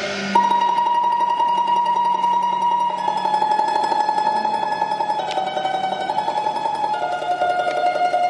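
Beijing opera music: a high melodic line held on one long note, then stepping down to lower notes about three and seven seconds in, over a plucked-string accompaniment.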